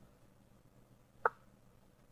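A single short move sound from an online chess board as the opponent's piece is placed, a soft knock about a second in.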